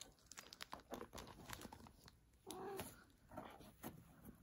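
Faint scratching and rustling of cardboard as a long-haired cat paws and pushes its head into a small cardboard box, with one short meow about two and a half seconds in.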